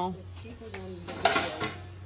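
Metal trays and plates clanking against one another as a brass tray is pulled out of a stacked pile, a few sharp knocks with a short metallic ring, the loudest just past the middle.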